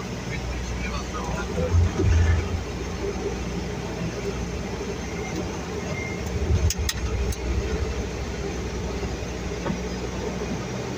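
Steady cockpit noise of a Dash 8 Q200's twin turboprop engines and propellers in flight on approach, with louder low rumbles about two seconds in and again near the middle, and a few sharp clicks around seven seconds.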